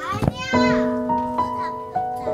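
Soft background music of held keyboard chords that change a few times. A child's high voice calls out briefly at the start.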